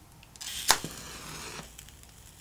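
A match being struck: a short scrape, a sharp crack as it catches, then about a second of hissing flare that dies away.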